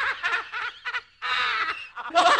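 A spooky horror-style laugh: a voice laughing in quick 'ha' pulses that rise and fall in pitch. After a short break about a second in, it gives a higher, held note.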